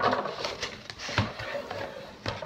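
Cardboard box being opened and handled on a wooden table: scraping and rustling of the flaps, with a low knock about a second in.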